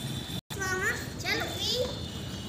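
Children's high-pitched voices, calling out in short rising sounds, after a brief dropout about half a second in.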